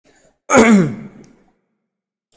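A man clearing his throat once, about half a second in, ending in a short voiced sound that falls in pitch.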